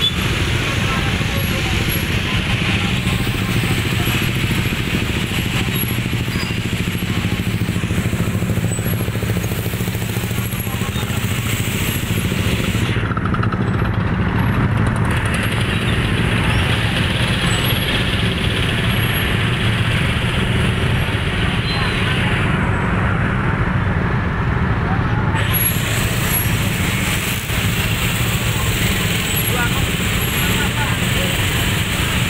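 Many motor scooter engines running in a jammed road, a steady low drone, with a crowd's voices mixed in.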